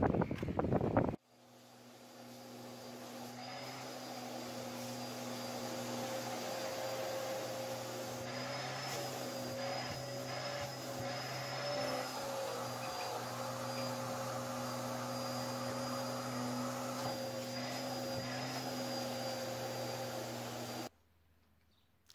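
A steady motor drone with a held high whine. It fades in after a cut about a second in and cuts off suddenly shortly before the end.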